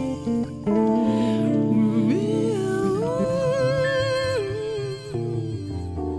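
Jazz-funk band music with electric keyboards, bass and drums. A lead melody slides up about two seconds in, holds, and slides back down around four and a half seconds.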